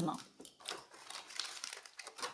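Soft, irregular rustling and crinkling close to the microphone, with scattered small clicks: handling noise as the phone or something against it is moved.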